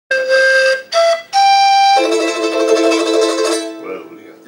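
A small hand-held instrument plays three steady held notes, each higher than the last, then sustains a chord of several notes that fades away shortly before the end.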